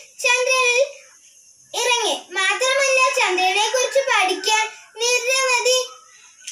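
A young girl singing unaccompanied in held, wavering phrases, with a short pause about a second in.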